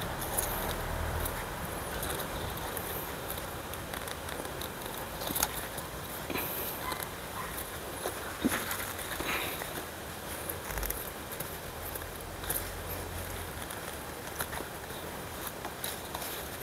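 Onions being pulled by hand from garden soil: rustling of stalks and leaves and crumbling earth, with a few short cracks and snaps scattered through.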